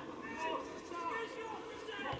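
Indistinct talk from people near the microphone, a few short phrases one after another.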